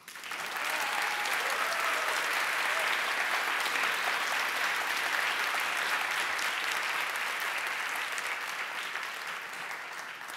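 Audience applauding. The applause starts at once, holds steady and tapers slightly near the end.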